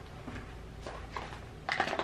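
Pringles chips being taken from the can and set on plates: a few faint clicks and rustles, with a louder cluster of sharp clicks near the end.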